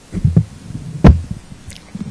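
Microphone handling noise: irregular low thumps and rumbles, with one sharper knock about a second in.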